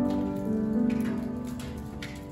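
Small vocal group singing a worship song with grand piano accompaniment, the notes held long and changing pitch every second or so.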